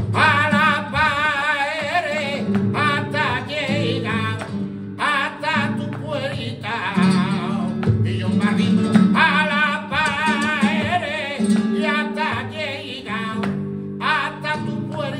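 Live flamenco: a male cantaor singing long, ornamented, wavering vocal phrases with short breaks between them, over flamenco guitar accompaniment.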